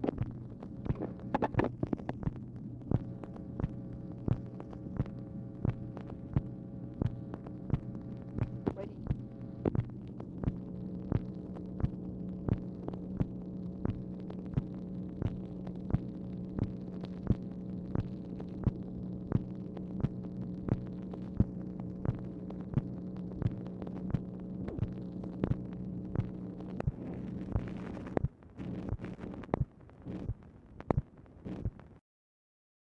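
Playback noise of a Dictabelt telephone recording: a steady hum with regular clicks, a little under two a second. The hum cuts out near the end, leaving scattered clicks.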